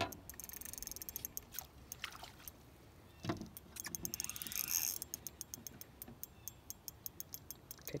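Fishing reel clicking in a steady run of sharp ticks, about four or five a second, while a hooked bass pulls on the line.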